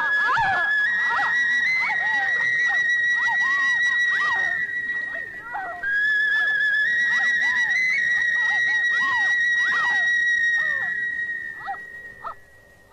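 Two long, high whistle-like tones, each about five seconds, wavering and stepping up slightly in pitch; the second starts about six seconds in. Short scattered chirps sound beneath them.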